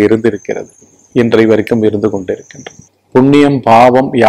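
A man speaking Tamil in short phrases with brief pauses. Under the speech, a faint, steady high-pitched tone runs for about two seconds, stopping near the end.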